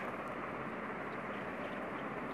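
Steady, even background hiss of room tone, with no distinct event.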